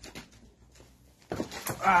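Faint rustling and handling noise, then a man's voice starts about a second and a half in with a drawn-out, wavering "voilà".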